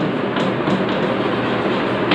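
Chalk writing on a blackboard: light taps and scrapes over a steady background hiss.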